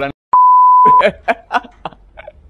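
A single pure-tone bleep, loud and held at one steady pitch for about two-thirds of a second after a brief cut to silence, laid over the talk like a censor bleep; chatter picks up again right after it.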